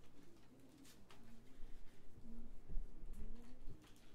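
Sparse, quiet opening of a jazz trio number: low double bass notes that slide in pitch, a few soft low thuds in the second half, and light ticks on the cymbals.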